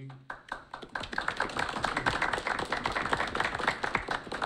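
Several people applauding: hand claps that build up within the first second and carry on steadily.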